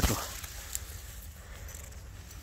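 Grass and leaves rustling as they brush close against the hand-held camera moving through low vegetation, loudest at the very start and fading away, over a low steady rumble, with one faint click a little under a second in.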